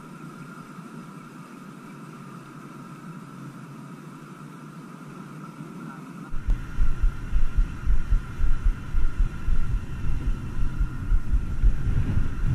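Wind buffeting an action camera's microphone: irregular low rumbling gusts that begin suddenly about halfway through, after a quieter stretch with a faint steady hum.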